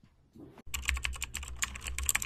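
Rapid computer-keyboard typing clicks, several a second, starting about two-thirds of a second in over a steady low hum.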